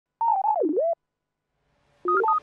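A short synthesizer sound effect lasting under a second: a wavering electronic tone that swoops down in pitch and back up again.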